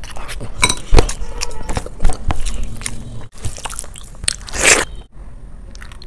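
Close-miked eating of biryani by hand: chewing and crunching mouthfuls with sharp smacks and clicks of biting, the loudest strokes about one and two seconds in.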